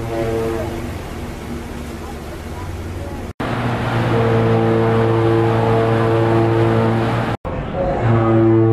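Ferry horns. The tail of one ship's horn blast fades in the first second over steady background noise. After a cut, the ferry Spokane sounds one long, steady, low horn blast of about four seconds, and another ferry's horn starts just at the end.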